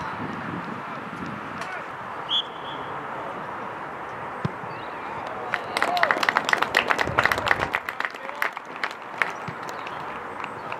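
A few spectators clapping at a goal, separate sharp handclaps starting about halfway through and lasting about four seconds, over an open-air background of distant voices.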